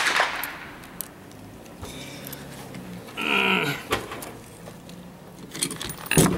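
A sharp metallic click with a short ring, then scattered light clicks and handling noise as a yellow plastic chamber flag is fitted into the open action of a scoped Pachmayr Dominator single-shot pistol on a wooden bench.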